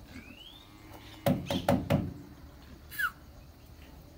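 Four sharp knocks in quick succession on the wooden body of a livestock truck holding a cow, starting about a second in. A short rising bird chirp comes just before them and a falling chirp follows near the end.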